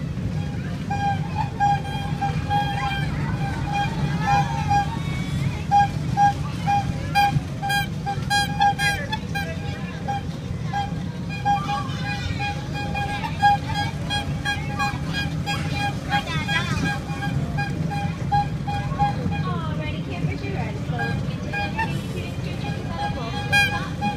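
Low steady rumble of a kiddie truck ride in motion, with a repeating tune and people's voices over it.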